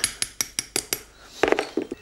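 A quick run of about six light, ringing clinks in the first second, from small hard workshop parts being handled and knocked together.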